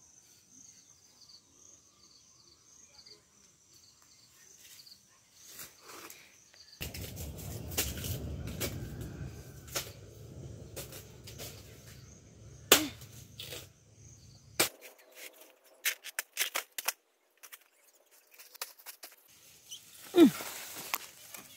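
Footsteps crunching through dry banana leaves and plant litter, with scattered sharp snaps and crackles, the loudest about 13 seconds in. A low rumble on the microphone runs from about 7 to 15 seconds, and faint steady insect chirring sits under the quiet first part.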